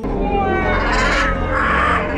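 Macaws calling as a flock flies overhead: several drawn-out squawks falling in pitch, with a harsher screech about one and a half seconds in.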